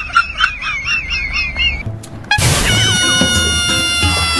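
Edited-in comic sound effects and music. A high warbling tone wobbles up and down for the first couple of seconds. After a brief dip, a loud music sting cuts in with held notes and a falling glide.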